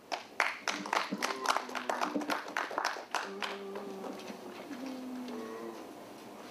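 A small audience clapping for about three seconds, then faint music with a few held notes.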